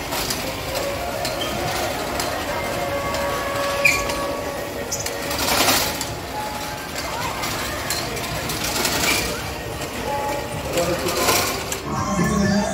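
Busy fairground sound: a crowd's voices over a steady mechanical rattle from running rides, with louder swells about halfway through and again near the end.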